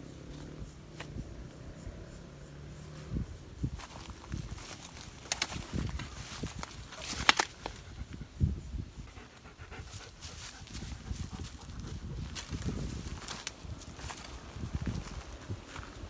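German shepherd panting, with footsteps crunching through dry leaf litter and undergrowth and a few sharp snaps of twigs, the loudest a little past the middle.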